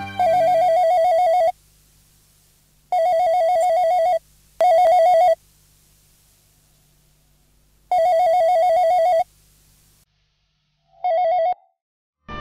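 Electronic landline telephone ringing with a warbling trill, five rings in a broken pattern. The last ring, near the end, is short and cut off as the phone is answered.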